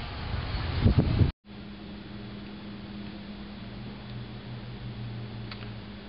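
About a second of loud outdoor background noise with a short rustling burst, then an abrupt cut. After the cut comes a steady low hum of indoor room tone, like a fan or appliance running.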